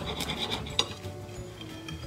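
A bread knife sawing through the crisp crust of a baked focaccia, with a few rasping strokes in the first second and quieter cutting after, over faint background music.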